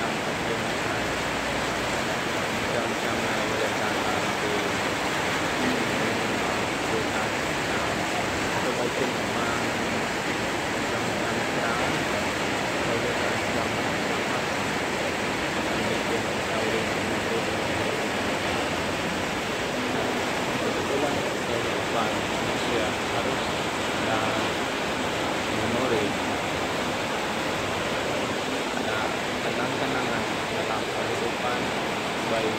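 Heavy rain falling hard onto corrugated metal roofs, a dense, even hiss that holds steady throughout.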